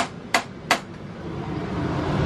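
The small RV oven's igniter clicking three times in quick succession, sharp dry clicks a third of a second apart, while the burner fails to light.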